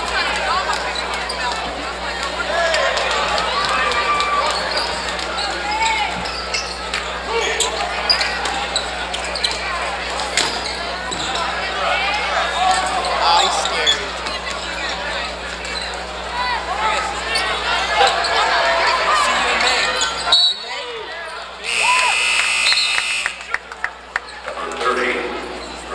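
Gymnasium basketball sound: crowd voices and shouting, ball bounces and short sneaker squeaks on the hardwood, over a steady electrical hum. About twenty seconds in, the hum drops out, and a shrill referee's whistle sounds for about two seconds as play is stopped for a call.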